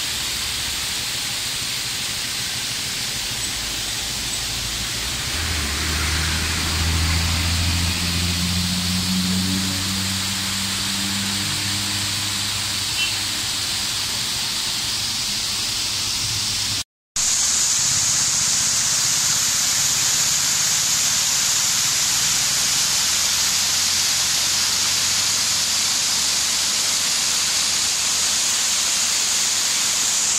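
A steady rushing hiss with a low engine hum that swells for several seconds in the first half. After a brief dropout just past halfway comes the steady rush of the twin-stream Wewessa Ella waterfall pouring into its pool.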